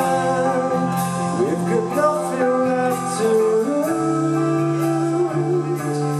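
Live alternative rock band playing: distorted electric guitars holding sustained chords over bass and drums, with cymbal hits, and a male lead voice singing over the top.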